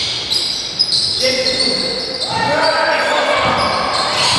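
Live basketball play in a reverberant gym: a ball bouncing on the wooden floor, sneakers squeaking in short high chirps, and players' voices calling out.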